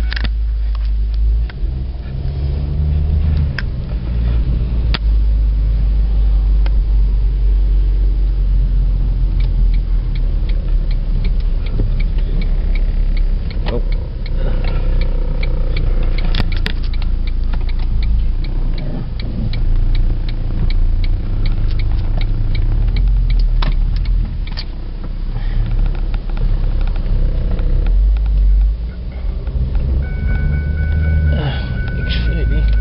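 Car cabin noise: a steady low rumble, with many sharp clicks and knocks scattered through it, some in quick runs.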